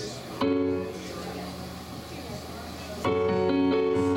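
Casio Privia digital piano sounding a chord about half a second in that fades away, then a louder held chord at about three seconds as the song's opening begins.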